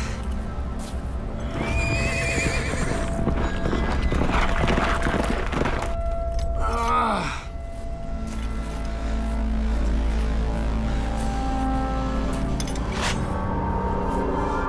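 Film score music with sustained held tones, over which a horse neighs twice: a wavering call about two seconds in, and a louder one about seven seconds in that falls steeply in pitch.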